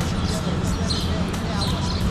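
A brief laugh and faint talk over a steady low rumble.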